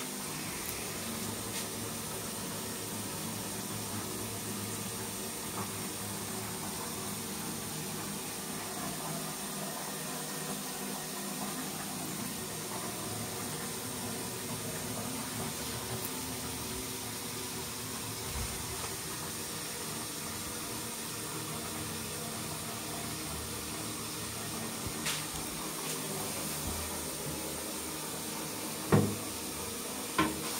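Dudley Elite low-level cistern refilling after a flush: a steady hiss of water running in. One short knock comes near the end.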